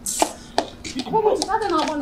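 A short sharp hiss and a couple of clicks at the start, then a person talking from about a second in.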